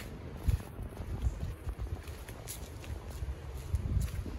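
Footsteps on a concrete sidewalk while walking, heard as irregular low thumps, with handling noise from a handheld camera carried along.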